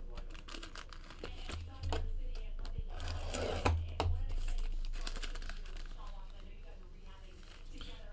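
Silver foil wrapper crinkling and rustling as a trading card is unwrapped by hand, in scattered short rustles with a few sharp clicks.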